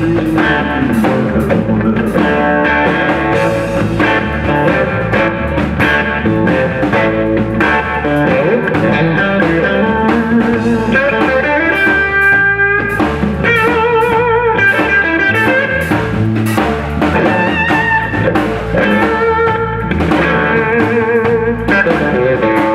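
Live blues band playing an instrumental passage: an electric guitar leads with held, wavering vibrato notes over an upright bass line and drums.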